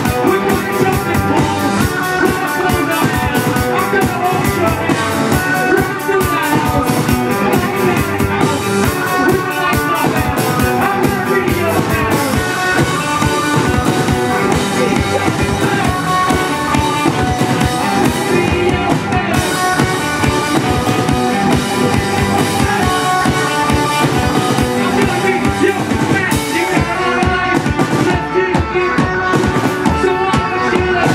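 Indie rock band playing live through a PA: electric guitars and a drum kit, loud and steady, with a driving beat throughout.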